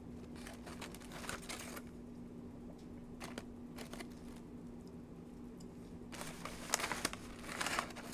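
Paper crinkling and rustling as it is handled, in a few short, quiet bursts, the loudest near the end.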